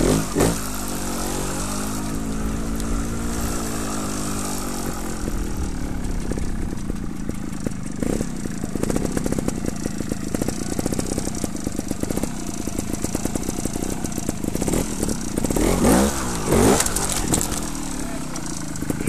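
Trials motorcycle engine running close by, its revs rising and falling slowly over the first few seconds, then idling with even firing pulses, with a few sharp throttle blips near the end.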